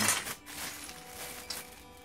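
Loose plastic Lego pieces clicking and clattering against each other as hands rummage through a bulk bag, with scattered sharp clicks over a rustling haze.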